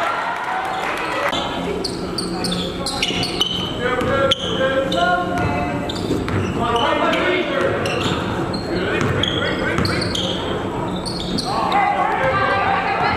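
Basketball being dribbled on a hardwood gym floor, with indistinct voices of players and spectators and short high squeaks, all echoing in a large gym.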